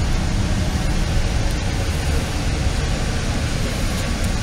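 Steady low rumble and hiss heard from inside a double-decker commuter train car, with no distinct events.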